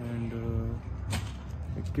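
A man's voice for the first part, then a short sharp hiss about a second in, over a steady low hum.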